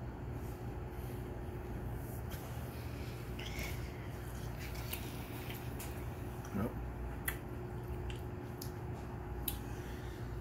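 A man chewing a mouthful of sushi: faint wet mouth sounds and small clicks over a steady room hum, with a brief "mm" about two-thirds of the way through.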